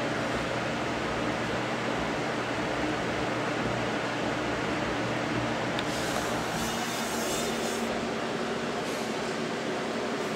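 A steady machine hum with faint low tones, unchanged throughout, and a stretch of hissing rustle from about six to eight seconds in.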